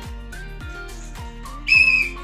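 One short, loud, steady high blast of a whistle near the end, over background music with a steady beat.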